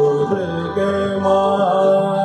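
Male Hindustani classical vocalist singing a slow, gliding wordless phrase of Raag Durga, holding and bending notes over the sustained tones of a harmonium.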